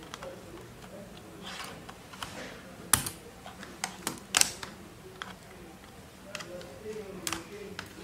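Flat-blade screwdriver tip clicking against the plastic edge of a Lenovo ThinkPad T470 keyboard as the keyboard is pushed and slid out of its locking tabs: a series of sharp, irregular clicks, the loudest about three seconds in and again just after four seconds.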